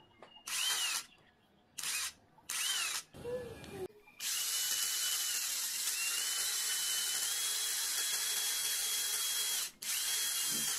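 Small cordless drill run with a hex-shank drill bit. It gives three short trigger bursts, each whine rising and falling, then a lower-pitched burst, then a long steady run of about five seconds.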